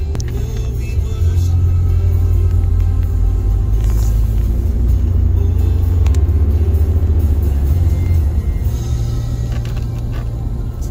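Music playing inside a moving car, heavy in the bass, over the car's low road and engine rumble.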